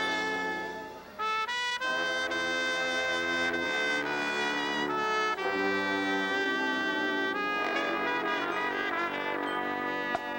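Brass ensemble of trumpets and trombones playing a Christmas arrangement in held chords; the sound dies away briefly about a second in, then comes back in with a rising run and carries on in sustained chords that change every second or so.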